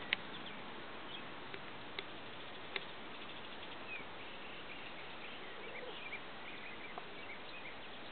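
Faint birdsong chirping over steady low background noise heard from inside a parked car, with a few light clicks.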